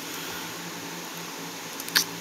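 Steady low hum and hiss of room noise, like a fan running, with a short click near the end.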